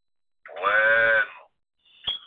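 A person's voice holding one drawn-out vowel at a steady pitch for about a second, starting about half a second in.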